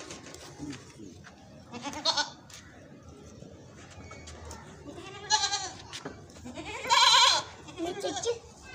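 Goat bleating: three calls about two, five and seven seconds in, each rising and falling in pitch, the last the loudest and longest.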